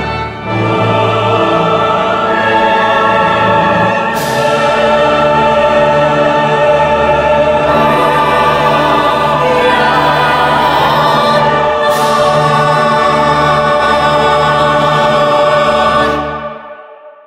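Mixed choir and symphony orchestra performing the closing bars of a choral anthem, building to a long sustained chord. Two sharp strokes ring out about 4 and 12 seconds in.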